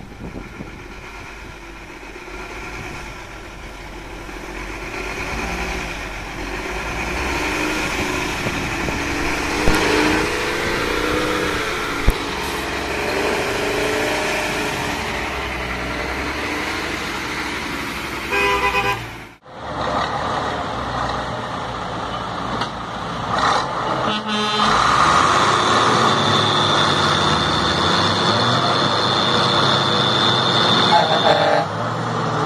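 Heavy truck engine labouring and revving as the truck churns through deep mud. After an abrupt cut, truck engines run and a horn sounds one long steady blast over the last few seconds.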